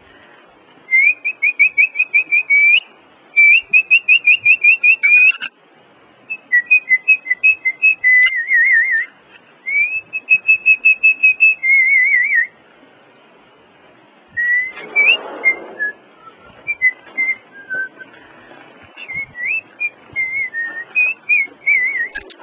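A person whistling to call a puppy: short phrases of quick repeated high notes, upward slurs and warbling trills, with brief pauses between phrases. A short rustle comes about two-thirds of the way through.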